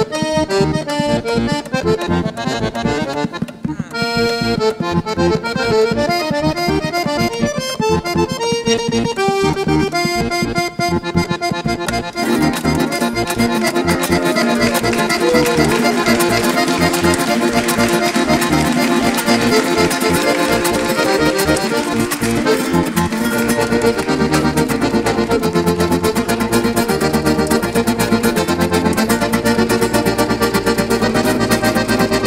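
Hohner piano accordion playing a fast, busy solo passage in a Venezuelan-flavoured tune. About twelve seconds in the texture fills out as the band comes back in, and a bass line enters past the middle.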